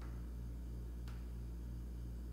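Low steady background hum with a faint pulse about three times a second, and a single faint click about a second in.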